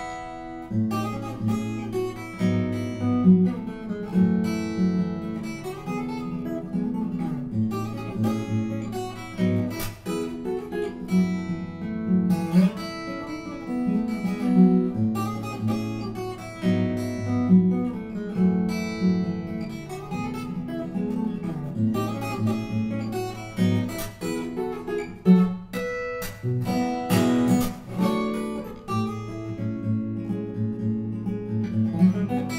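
Steel-string acoustic guitar played solo fingerstyle at a fast tempo: a quick picked melody over a steady bass line, with a few sharp accented strokes along the way.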